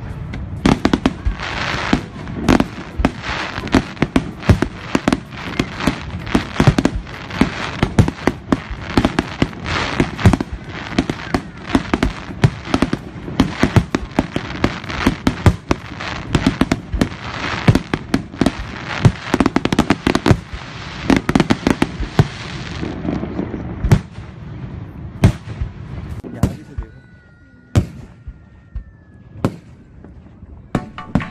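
Fireworks display: a dense, rapid barrage of shell bursts and crackling bangs that thins out to scattered bangs after about 24 seconds.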